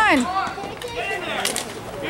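Dek hockey game sounds: a spectator's shouted "come on!" cutting off right at the start, then fainter calls from the players and two sharp clacks of sticks, ball and boards in the scramble, about a second and a second and a half in.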